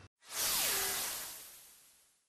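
Whoosh sound effect of a TV news ident: a sudden swell of hissing noise with a tone that slides downward and settles, then fades out over about a second and a half.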